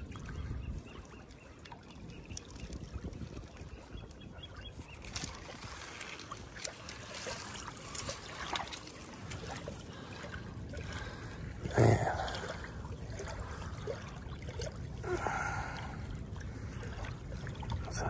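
Shallow water lapping and trickling at a sandy shoreline, low and steady. One brief louder sound comes about two-thirds of the way through.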